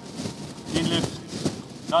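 Speech: short fragments of a voice over a crowd's low background talk.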